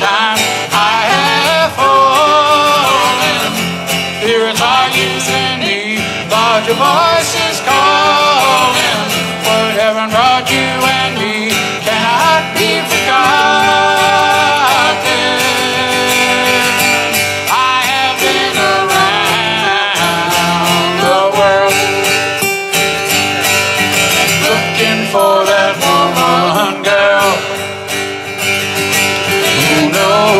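Two acoustic guitars strummed and picked together in a soft-rock song, with a man's voice carrying the melody over them.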